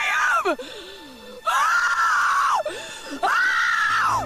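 A woman screaming "no" in anguished grief: a short cry falling in pitch, then two long, high wails.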